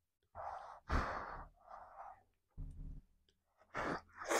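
A woman's breathy sighs and exhales while eating, three in the first two seconds, then a short low thump and another breath just before she takes a mouthful.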